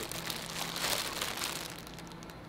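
Cellophane wrapping of a flower bouquet crinkling as it is carried and handled, a crackly rustle that fades near the end, over a faint steady low hum.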